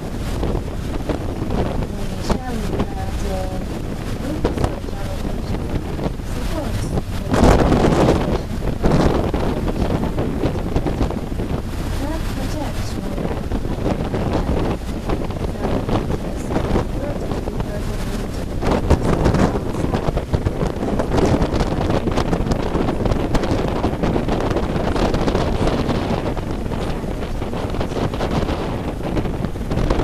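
Wind buffeting the microphone on the open deck of a moving catamaran, over the rush of water churned up by the boat. Stronger gusts come about seven seconds in and again around nineteen seconds.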